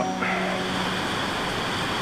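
Steady rushing hiss of water: rain runoff flowing across the ground under the barn.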